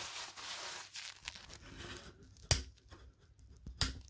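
Rustling handling noise, then two sharp clicks a little over a second apart.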